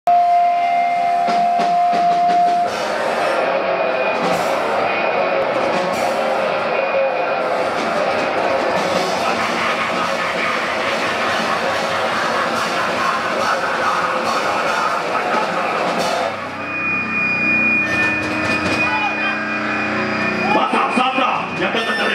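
Grindcore band playing live: a dense, loud wall of distorted guitar and drums with a screamed vocal. It opens on a steady held tone, and about 16 seconds in the wall of sound breaks off, leaving a steady high ringing tone over lower held notes.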